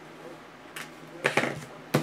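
Hard plastic trading-card holders being picked up and handled on a tabletop: a few light clicks and knocks starting about a second in, the sharpest near the end.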